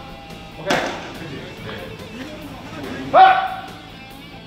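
A single sharp pop about three-quarters of a second in, then a short, loud shouted call near the end, over faint background music in a reverberant bullpen.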